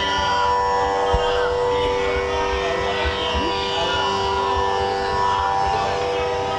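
Carnatic music: a woman singing with violin accompaniment over a steady drone, with rapid mridangam strokes beneath.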